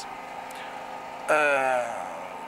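A steady background hum with a faint high tone, broken about halfway through by a man's single drawn-out hesitation "uh" that falls in pitch.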